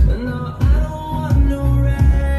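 A song with singing and a strong, deep bass beat played through a Polytron PAS 68-B active speaker, fed from a phone's line input as a test of its modified power supply.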